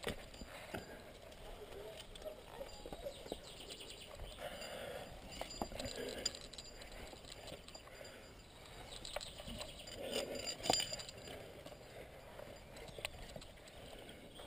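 Carabiners and quickdraws on a climbing harness clinking in scattered sharp clicks, among rustling and scuffing from the climber's movements on the rock.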